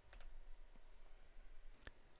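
Two faint computer mouse clicks, one about a quarter second in and one near the end, over near-silent room tone.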